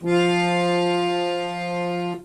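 Harmonium holding a single long, steady note for about two seconds, the reedy tone rich in overtones.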